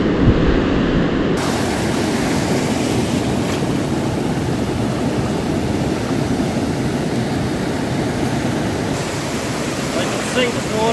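Steady rush of ocean surf with wind on the microphone. The sound changes abruptly about a second and a half in.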